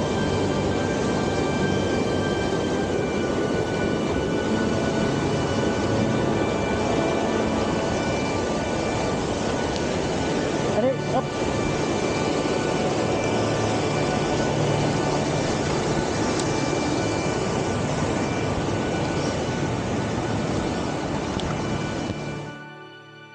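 Mountain torrent of whitewater rushing steadily close by, a loud, even roar of water.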